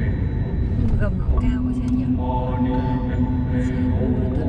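A voice singing or chanting long, held notes, with a brief sliding phrase about a second in, over a steady low rumble from the car.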